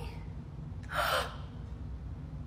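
A young woman's single short gasp, a quick breathy intake of breath in surprise, about a second in.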